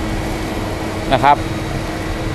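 60-litre vacuum cleaner running steadily with a cyclone dust separator in line, sucking sawdust up through the nozzle: a steady rushing hum with one held tone. The suction is only moderate.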